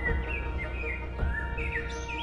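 Small garden birds singing and chirping in quick, short rising and falling notes, over soft background music.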